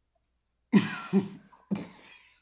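A man coughing and gagging on a mouthful of a foul-tasting smoothie: three sudden coughs starting about a second in.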